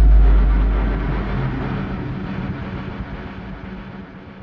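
A deep cinematic boom hits suddenly and then fades slowly over several seconds, as a rumbling, hissing tail: a logo-intro sound effect.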